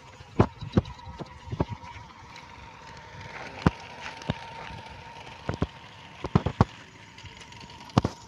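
Catfish thrashing on a dry dirt path, their bodies slapping the ground in irregular sharp smacks, several in quick succession near the end, over a faint steady tone.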